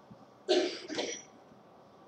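A person coughing to clear their throat: two short harsh bursts about half a second apart, the first louder, starting about half a second in.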